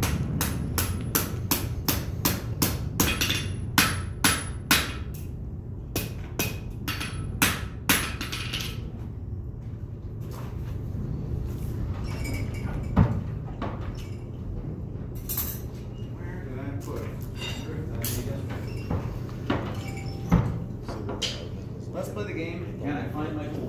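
Blacksmith's hammer striking a red-hot iron bar on an anvil: a quick run of ringing blows, about three a second, for roughly the first nine seconds, then a few scattered knocks.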